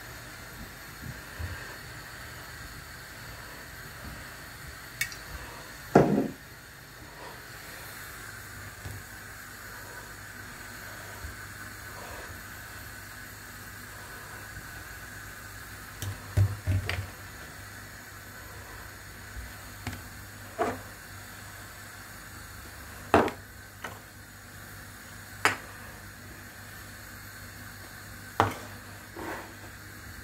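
Scattered sharp knocks and clunks of kitchen containers, lids and spice tubs being handled and set down on a countertop, the loudest about six seconds in, over a steady faint hiss.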